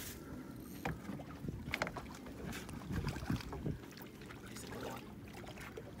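A hooked snook splashing at the surface right beside a boat, with water lapping. Short splashes come about a second, two seconds and two and a half seconds in, over a low rumble of wind on the microphone.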